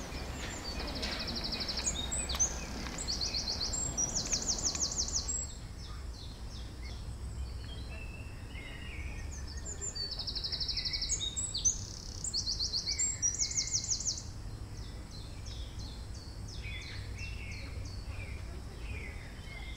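A small bird singing high, rapid trills in two bouts, the second starting about ten seconds in, over a steady low rumble of outdoor background noise.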